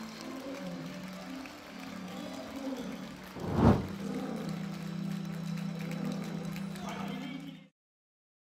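Background music with a steady low held tone, broken about three and a half seconds in by one loud transition whoosh; the sound cuts off suddenly just before the end.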